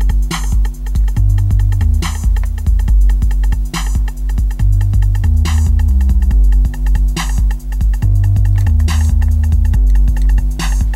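Electronic music playing back from a mixing session: a synth bass line stepping between low notes with a programmed drum track, a snare-like hit landing about every 1.7 seconds over steady ticking hi-hats.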